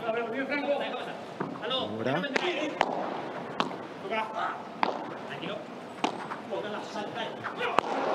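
Padel ball being struck by paddles and bouncing on the court during a rally: a string of sharp knocks, roughly one a second, with voices underneath.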